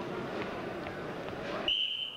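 Steady gym crowd noise, then near the end one short, steady blast of a referee's whistle. The whistle starts the wrestlers from the referee's (down) position.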